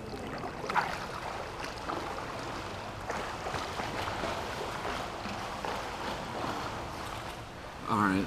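Pool water splashing and churning from a swimmer's strokes close to the camera, a steady wash of small irregular splashes.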